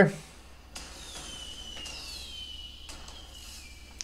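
Fireworks sound effect: a faint whistle falling slowly in pitch over about three seconds, with a few soft pops along the way.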